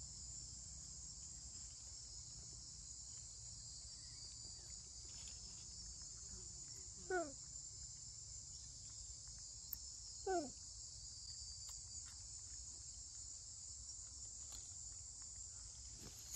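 Steady high-pitched insect chorus buzzing throughout. Two short calls falling in pitch stand out, about seven and ten seconds in.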